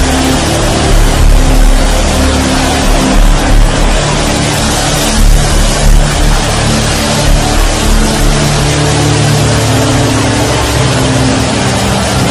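Music of long, held chords that shift every few seconds, under a loud, dense wash of many voices as a congregation prays aloud at once.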